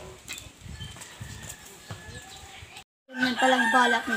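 A rooster crowing. The sound drops out completely a little under three seconds in, then comes back much louder with held, wavering tones.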